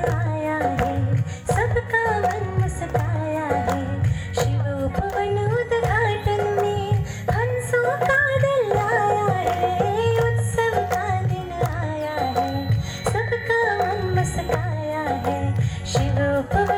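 A woman singing a song into a microphone over a musical accompaniment with a steady low beat.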